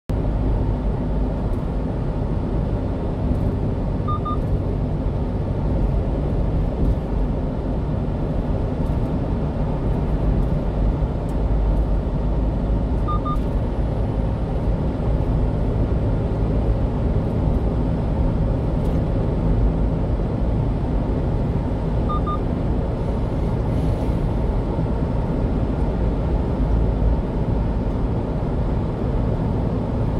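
Steady road and engine noise of a 1-ton truck cruising at highway speed, heard from inside the cab, strongest in the bass. A short, high double beep sounds about every nine seconds.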